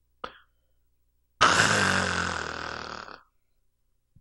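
A man's long, breathy sigh into a headset microphone, starting suddenly about a second and a half in and fading out over nearly two seconds, its low voice pitch sinking slightly as it dies away.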